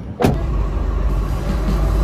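A sharp knock about a quarter of a second in, then a steady low rumble of a car, heard from at or inside the car.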